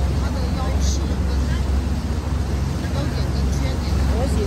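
Small boat's engine running with a steady low drone as the boat moves across the water, with faint voices in the background.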